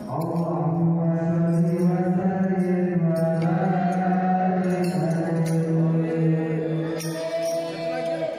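A man's voice through a microphone singing a slow, drawn-out devotional line in long held notes with slight bends, while the marawis drums are almost silent; the line ends just before the close.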